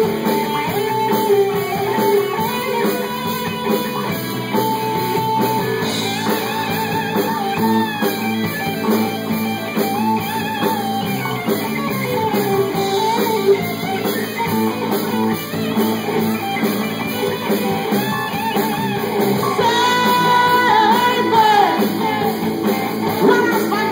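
Live hard-rock band playing an instrumental section, electric guitar lead lines bending and sliding over bass guitar and drums.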